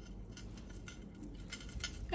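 Faint light clicks and clinks of a copper wire-wrapped coil necklace's jump rings and chain being handled, a few of them coming together in the second half.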